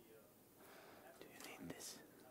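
Near silence: room tone, with faint hushed speech in the second half.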